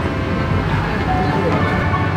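Busy indoor fairground ambience: a steady rumble of crowd noise, with faint music of held, jingly notes coming in about a second in.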